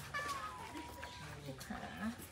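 Cats crowding at feeding time, one giving a drawn-out meow that falls slightly in pitch, with a person's voice alongside.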